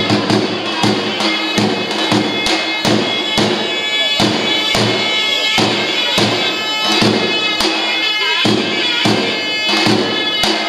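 Albanian folk dance music: shawms (zurna) playing a reedy, bending melody over steady strokes of a large double-headed drum (lodra), about two and a half beats a second.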